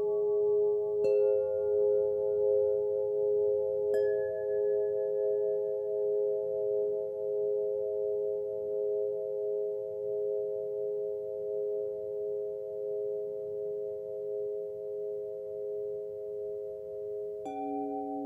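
Meditation chimes tuned to solfeggio tones, struck one at a time and left to ring with a slow wavering in the held tones. New strikes come about a second in, about four seconds in, and shortly before the end, the last bringing in a lower tone.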